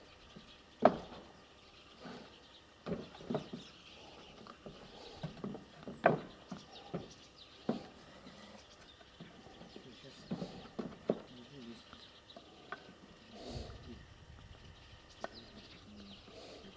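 Distant, irregular knocks and clunks of roof work: a wooden ladder and tools being handled against corrugated asbestos-cement roofing sheets, a sharp knock every second or so with the loudest about a second in and near the middle.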